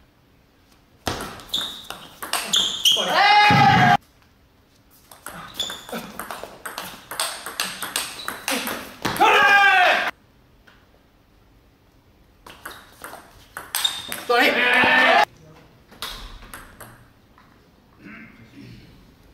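Table tennis play: the celluloid-type ball clicking sharply off rackets and table in quick exchanges, broken by three loud, roughly one-second shouts from a player that end abruptly.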